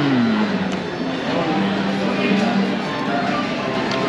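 Restaurant background sound: music playing under the murmur of other diners' voices.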